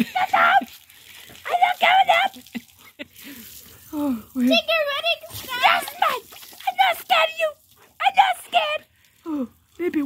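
A person's high-pitched wordless vocalizing in short bursts, with a garden hose spraying water faintly underneath.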